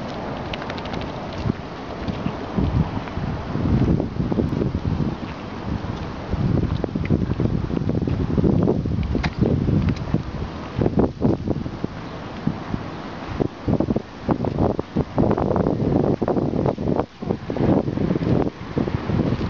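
Wind buffeting the microphone of a handheld camera, a rumbling noise that swells and drops unevenly in gusts.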